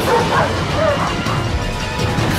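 A German shepherd barking, a quick run of barks in the first second, over dramatic film-score music.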